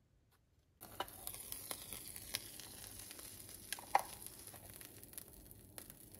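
A sandwich sizzling in a panini press: a steady hiss with scattered crackles and pops that starts suddenly about a second in.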